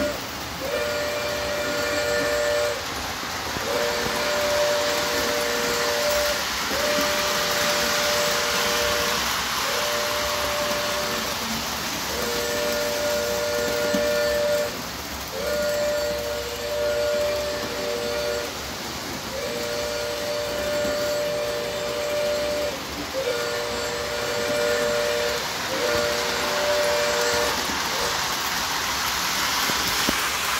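O-scale model train's electronic sound system blowing a two-note whistle over and over, about nine blasts of one to three seconds each with short gaps. Under them runs the steady hiss and rumble of the trains running on the track.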